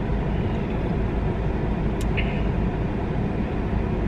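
Steady low rumble of a car idling, heard from inside its cabin, with a single sharp click about two seconds in.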